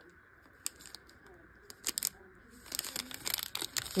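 Clear plastic packaging crinkling as it is handled: a couple of faint clicks at first, then a dense run of crackles in the last second or so.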